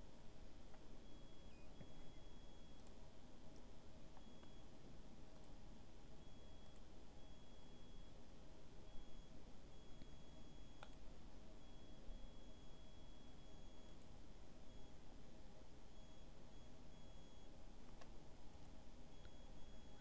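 Quiet room hiss with a few faint, scattered mouse clicks, and a faint high-pitched electronic whine that keeps breaking off and coming back.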